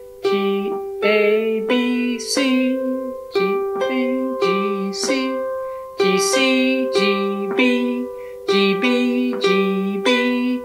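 Harp played as a chord accompaniment alternating G and C: plucked notes about every half second, a low bass note switching back and forth between two pitches under ringing higher notes. A voice sings or hums softly along.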